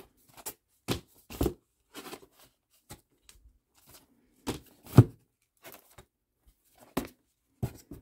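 Cardboard vinyl record album jackets being flipped through in a cardboard box, each one knocking against the next: about a dozen short, dry knocks at uneven intervals, with the loudest about five seconds in.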